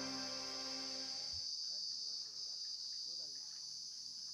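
A steady, high-pitched insect chorus of crickets at dusk. Soft sustained music stops about a second in.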